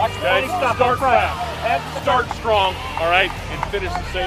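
Men's voices talking, with a low steady hum underneath.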